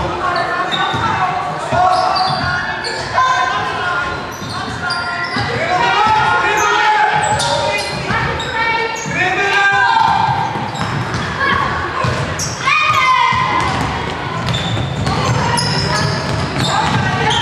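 Basketball game in a large echoing sports hall: a basketball bouncing on the wooden floor again and again, with players and bench calling out.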